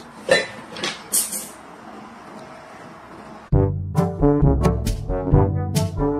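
A few short, indistinct sounds over a faint hiss, then brass background music with trombone and trumpet starts suddenly about halfway through, in quick punchy notes.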